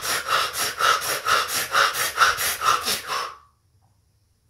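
A man breathing hard and fast through the open mouth, about two sharp breaths a second, like the short gasping breaths under a cold shower. The breathing stops abruptly about three and a half seconds in.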